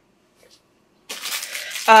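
About a second of near silence, then a short rustle of handling noise as a small packaged item is picked up, just before a woman's voice resumes at the very end.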